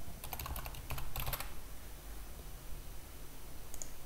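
Computer keyboard being typed on: a quick run of keystrokes in the first second and a half, then a few more keystrokes near the end, as a password is entered a second time to confirm it.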